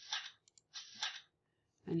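Two short clicks about a second apart, from a computer mouse paging through an online catalogue; a woman starts speaking near the end.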